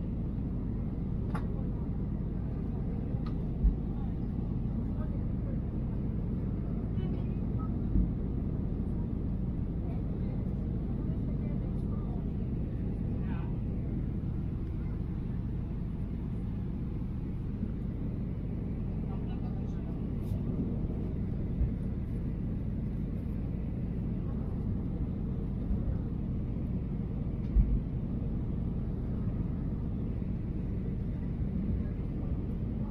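Steady low rumble of a jet airliner's engines and rushing air heard inside the passenger cabin during the descent, with a few brief low thumps.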